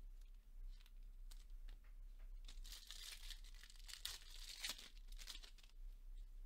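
Faint crinkling and tearing of a Topps Chrome trading-card pack's foil wrapper being opened, starting about two and a half seconds in and lasting about three seconds. Light clicks of cards being handled come before it.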